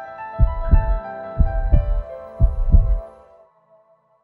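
Closing jingle: sustained synth chime tones under a heartbeat sound effect, three double beats about a second apart, fading out before the end.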